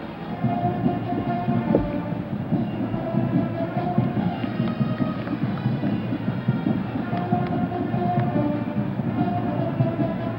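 A band playing held brass-like notes over a steady, dense crowd rumble, heard through a muffled old broadcast recording.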